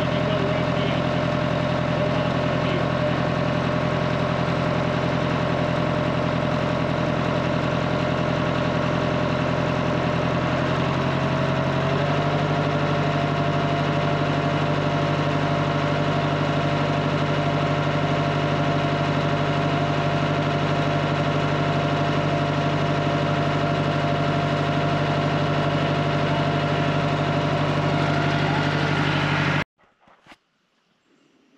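Massey Ferguson 265's three-cylinder Perkins diesel engine idling steadily, warmed up after about ten minutes of running. Its speed steps up slightly about twelve seconds in, and the sound cuts off suddenly just before the end.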